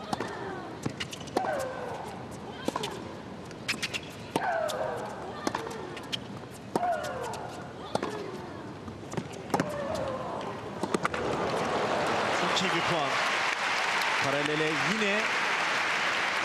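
A tennis rally: racket strikes on the ball about every second and a half, many of them with a player's grunt that falls in pitch. The rally ends about eleven seconds in, and the crowd breaks into applause, with a voice heard faintly under it.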